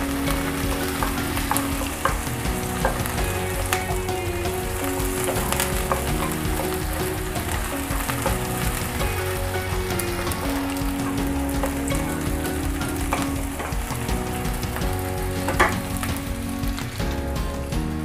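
Chopped onions sizzling in hot oil in a nonstick frying pan, with frequent small crackles and the scrape of a wooden spatula stirring them.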